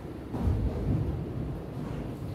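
Footsteps of a man walking across a raised classroom platform: a few dull, low thuds over a low room rumble.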